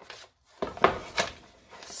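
A cardboard shipping box being handled: three short knocks with some rubbing, the middle knock the loudest.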